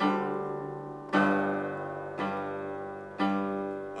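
Piano chords played slowly, four struck about a second apart, each ringing and fading before the next.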